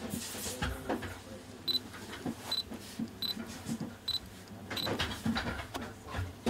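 Five short, high electronic beeps from an Olympus mirrorless camera body, each under a second apart, over small clicks and rustling as gloved hands handle the camera and its 12mm lens.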